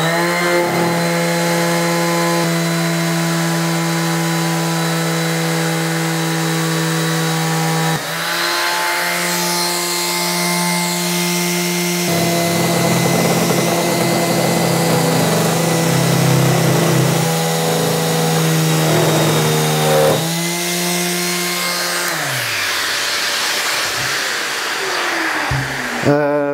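Einhell TE-OS 2520 E orbital sander running steadily, its pad sanding along the rebate of an old painted wooden door. The motor spins up at the start and winds down with falling pitch about 21 seconds in. The sander vibrates because its sandpaper clamp sticks out past the pad and catches in the rebate.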